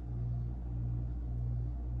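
Low, steady background music bass that dips faintly about every half second.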